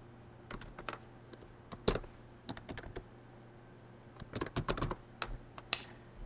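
Computer keyboard typing in short, irregular bursts of keystrokes, quiet against a faint steady hum.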